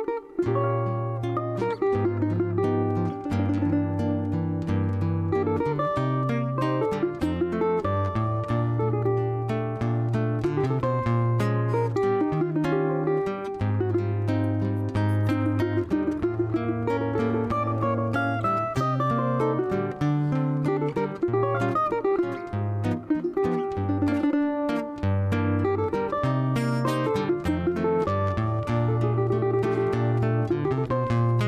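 Cavaquinho playing a choro melody, accompanied by a nylon-string acoustic guitar playing bass lines and chords.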